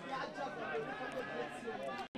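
Faint, indistinct chatter of several voices on a football pitch, with no single clear speaker.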